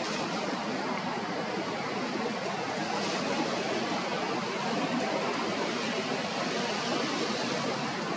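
Steady outdoor background noise: an even rushing hiss with no distinct calls or events.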